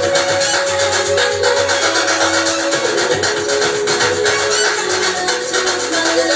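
1980s dance music played from vinyl on turntables in a DJ mix: a fast, steady shaker and hi-hat rhythm under held synth tones that step to a new pitch about three seconds in.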